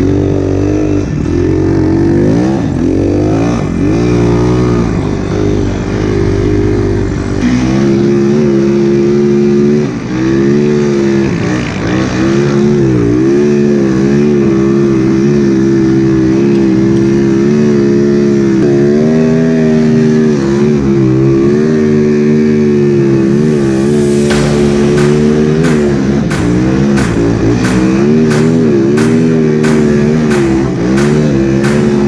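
A 2007 Yamaha YZ450F's single-cylinder four-stroke engine, fitted with a snowbike track kit, running hard under way, its pitch rising and falling again and again as the throttle is worked.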